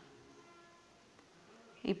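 Faint, steady low hum; a woman starts speaking near the end.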